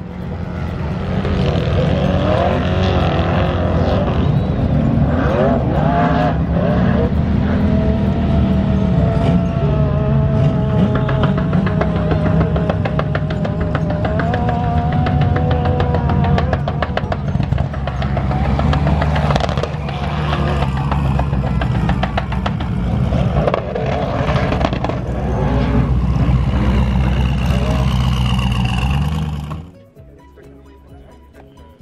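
Off-road dune buggy and side-by-side engines running and revving on the sand dunes, the pitch rising and falling. The sound cuts off just before the end.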